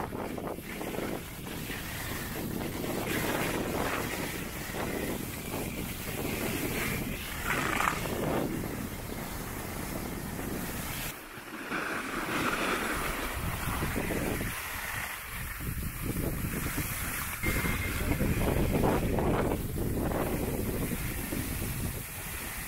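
Wind buffeting the microphone: a loud, uneven rushing noise that swells and eases throughout, dipping briefly about eleven seconds in.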